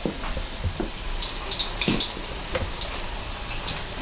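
Battered acacia-flower fritters deep-frying in hot oil: a steady sizzle with scattered sharp crackles.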